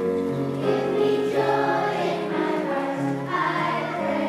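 A children's choir singing, with an instrumental accompaniment holding long, steady bass notes beneath the voices.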